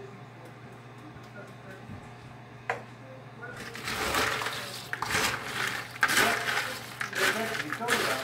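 Dry snack mix of pretzels, Bugles, cereal and peanuts being stirred and tossed in a large bowl with a spatula: a dense, irregular rustling and clattering that starts about three and a half seconds in, after a low steady hum and one small click.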